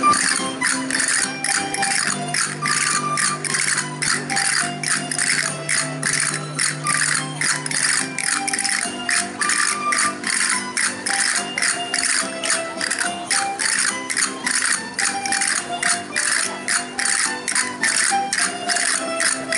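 Aragonese folk dance music with a crisp, jingling percussion beat of about three strokes a second over sustained melody notes.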